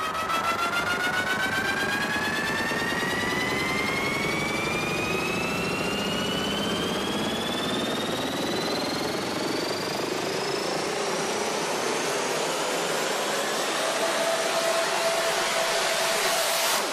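Electronic dance-music build-up: a long synthesized riser sweeping steadily upward in pitch over a hissing wash of noise.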